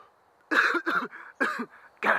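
A man coughing three or four times in quick succession, starting about half a second in, as if choking on a puff of cigar smoke blown into his face.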